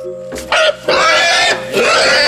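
A pig screaming as it is speared: a loud, shrill squeal starting about a second in and held, over a steady musical drone.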